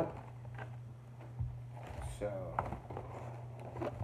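Quiet handling of a torn-open cardboard shipping box: faint scrapes and rustles, with a soft thump about a second and a half in, over a steady low hum.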